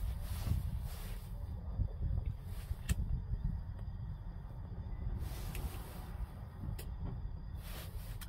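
A hardwood poker pipe being relit and puffed with a lighter: soft puffs and a couple of sharp clicks, over a steady low rumble.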